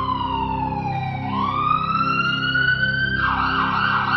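Siren-like alert sound effect: a single tone that slides down, then rises slowly again and turns rough and warbling near the end, over a faint steady low hum.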